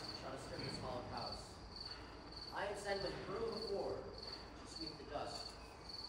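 Cricket chirps played as a stage sound effect: a high, even pulse repeating a little under twice a second.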